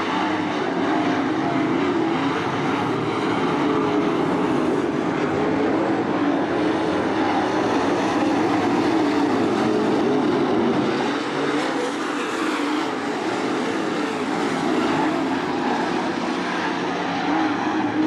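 Dirt late model race cars' V8 engines running hard around a dirt oval during a race: a continuous loud drone whose pitch wavers up and down as the cars work through the laps, easing slightly a little past halfway.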